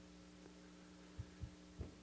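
Near silence: a steady low electrical hum, with three soft low thumps in the second half.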